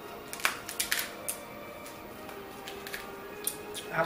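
Crab leg shells cracking and snapping as they are broken open by hand, with a cluster of sharp cracks in the first second and a couple more near the end. Faint music plays underneath.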